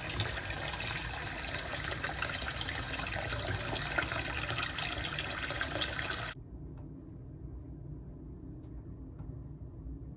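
Bathroom sink tap running, its stream splashing over a waterproof phone case held under it in the basin. About six seconds in, the rush of water stops abruptly, leaving only faint splashes and drips.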